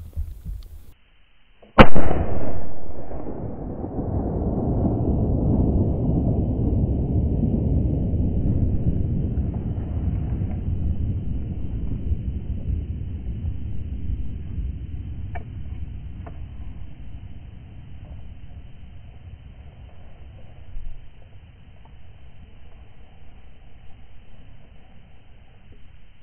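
A single rifle shot from a .450 Bushmaster, sharp and very loud, about two seconds in, with a short echo. It is followed by a long low rumbling noise that slowly fades.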